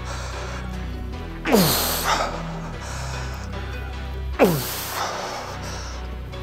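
A man's strained, forceful exhales: a groan sliding down in pitch, twice, about a second and a half in and again past four seconds, one for each hard leg-extension rep near muscle failure. Background music plays throughout.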